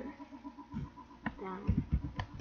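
A few sharp computer keyboard keystrokes as a short word is typed, with a brief drawn-out voiced sound from a woman partway through.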